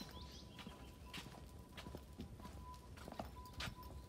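Faint footsteps on a yard path: a few soft, irregular steps over a low background.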